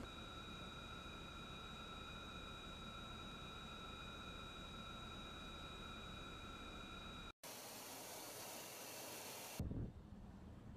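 Faint steady background noise carrying a few thin, steady high whining tones. About seven seconds in it cuts out for a moment, then gives way to a different faint hiss.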